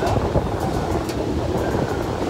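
Mumbai suburban electric commuter train heard from inside the carriage while running: a steady noise of wheels and carriage with a few sharp clicks, and wind on the microphone.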